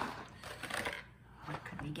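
A cardboard advent calendar box set down on a wooden table with a knock, then about a second of scraping and rattling as it is handled.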